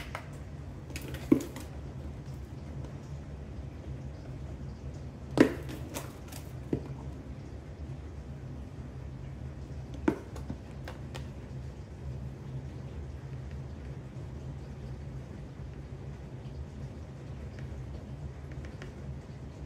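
Flour being poured from a plastic storage box into a glass mixing bowl on a kitchen scale: a few sharp knocks and clicks, the loudest about five seconds in, over a steady low hum.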